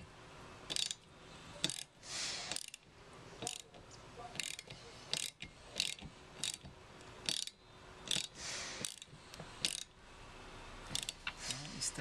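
Socket ratchet on a 13 mm nut clicking in short runs of strokes, about one sharp click a second with quick ratcheting between, as the nut is wound down onto the wiper arm spindle.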